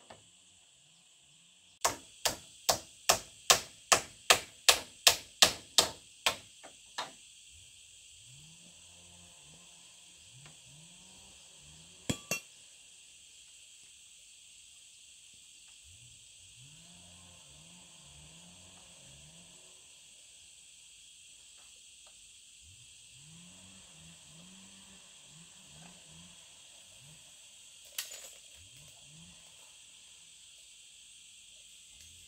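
A run of about a dozen hammer blows on a bamboo pole frame, roughly two or three a second, then a pair of knocks about ten seconds later and a single knock near the end. A steady, high-pitched drone of insects runs underneath.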